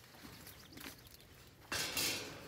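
Faint outdoor background, then near the end a sudden short rush of noise as the steel-pipe frame of a livestock pen is handled.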